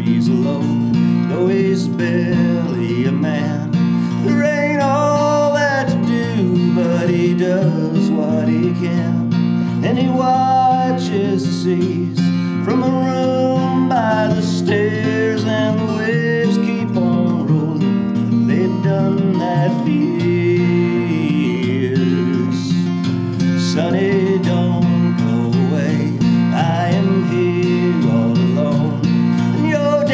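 A man singing to his own acoustic guitar: a steady strummed chord bed runs underneath, and a sung melody line comes and goes over it.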